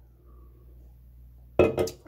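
Faint sounds of drinking from an aluminium energy-drink can, then a sudden loud, short sound with a few sharp clicks about one and a half seconds in as the drinking ends.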